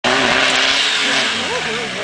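Off-road 4x4's engine revving hard and held at a steady high pitch, under load as the vehicle climbs a steep dirt bank. A voice shouts about one and a half seconds in.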